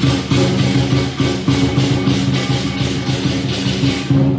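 Lion dance percussion: drum, cymbals and gong playing a steady beat of about three strikes a second, over a sustained low ringing tone.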